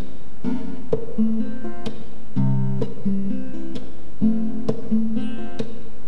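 Acoustic guitar strumming a repeating chord sequence, an instrumental passage of a song with no singing.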